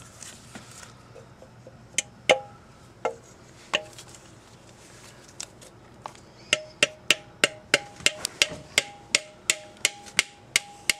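Sharp metallic taps from a hand tool working on a manual transmission's bellhousing. A few come scattered at first, then from about six and a half seconds in they settle into a steady run of about three a second, each with a brief ring.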